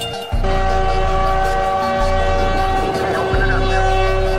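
A train horn sounds one long steady blast that starts sharply about half a second in, with background music and its low bass notes running underneath.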